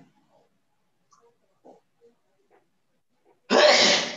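Faint, scattered scratches of a marker writing on a whiteboard, then, about three and a half seconds in, a sudden loud rush of noise lasting under a second.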